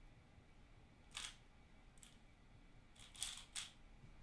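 Plastic layers of a 3x3 speedcube being turned, heard as short soft clicks against near silence: one turn about a second in, then a quick run of three turns near the end.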